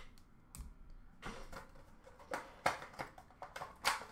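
Hands handling hard plastic card holders and packaging on a counter: a string of sharp clicks and taps, with a dull thump about half a second in.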